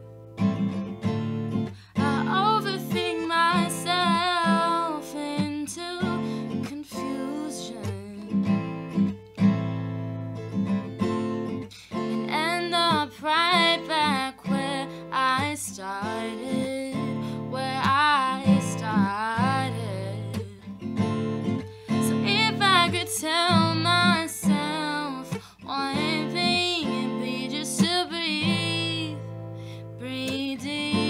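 A woman singing a slow song while playing a Yamaha acoustic guitar, her voice wavering with vibrato on held notes over the ringing guitar chords.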